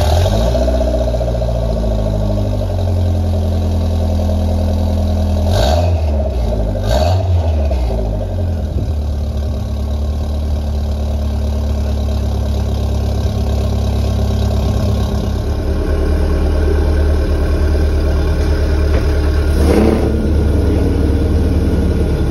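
Toyota MR2's swapped gen-4 3S-GTE turbocharged four-cylinder running at a steady idle through a cat-back exhaust, with short revs about six and seven seconds in and another near the end.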